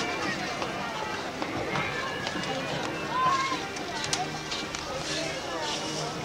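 Indistinct voices of several people talking at once, over a steady outdoor background.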